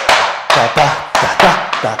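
Tap shoes' metal taps striking and brushing a wooden board in a brush-and-backbrush combination: an even run of sharp taps, about four a second.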